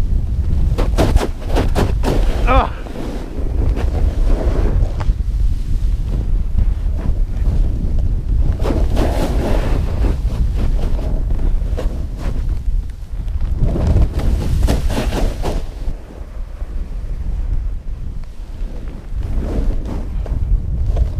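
Snowboard riding through powder snow, with heavy wind buffeting the action camera's microphone throughout. Three louder stretches of snow spraying and hissing under the board, near the start, around the middle and about three quarters through, as the rider turns.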